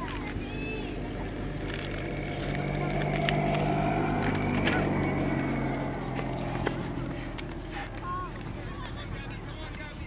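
A motor vehicle passing, its low engine hum swelling to a peak a few seconds in and fading away by about three-quarters of the way through.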